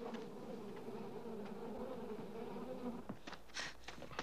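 A steady buzzing hum with a slightly wavering pitch that stops about three seconds in, followed by a few short, sharp knocks.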